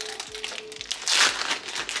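Plastic packet of sliced cheddar cheese crinkling as it is handled and opened, with one louder crinkle about a second in.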